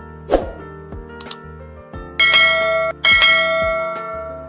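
Subscribe-button animation sound effects over soft background music: a short whoosh, a quick double click a little after a second in, then a bright bell chime rung twice, each ring ringing on and fading.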